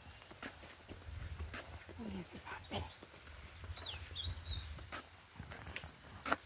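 Outdoor roadside ambience: wind rumbling on the microphone with scattered footstep clicks on a concrete road. A couple of short low calls from an animal come about two seconds in, and a bird chirps a few times a little past the middle.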